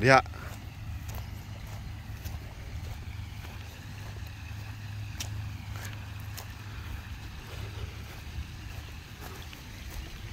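Wind rumbling on the microphone outdoors, a steady low rumble with a few faint light ticks.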